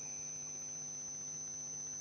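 Steady electrical hum with a faint high-pitched whine.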